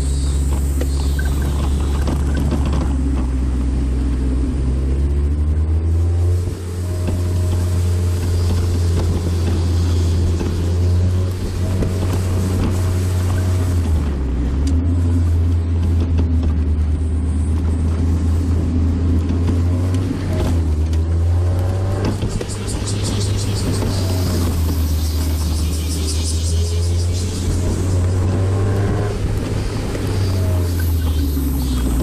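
Mazda Roadster (NB) four-cylinder engine heard from inside the open-top cabin, its pitch rising and falling repeatedly as the car accelerates and eases off along a winding road, over steady road noise.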